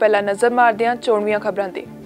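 A woman reading the news in Punjabi over steady background music; her speech stops shortly before the end.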